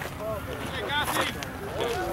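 Indistinct shouting and chatter from several voices around an open ball field, with one rising shouted call about halfway through.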